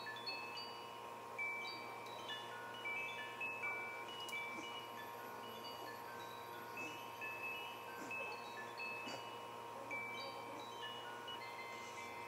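Quiet background music: a slow, tinkling melody of short, high bell-like notes at changing pitches, over a faint steady hum.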